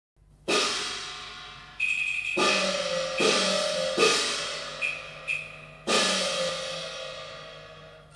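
Cantonese opera percussion playing an opening flourish: about five loud crashing cymbal and gong strikes, each ringing and slowly fading, with a few lighter, higher-pitched ringing strokes in between.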